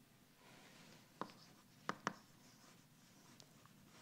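Faint chalk writing on a blackboard, with a few sharp taps of the chalk against the board.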